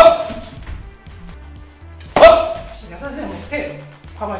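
Two side kicks smacking into a padded taekwondo chest protector, each with a short sharp shout: one right at the start and one about two seconds in. Background music with a steady beat runs underneath.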